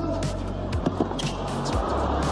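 Background music with a steady beat: a deep held bass, a low thud about once a second, and quick ticks between them.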